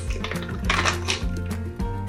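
Peanuts poured onto popcorn on a metal baking sheet, giving a scatter of light clicks and clinks in the middle, over background music with a steady bass line.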